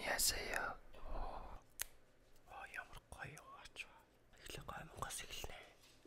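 A man whispering close to a microphone, in three short stretches with pauses between.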